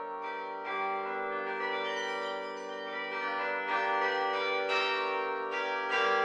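Carillon bells playing a slow melody, a new note struck about once a second, each ringing on under the next.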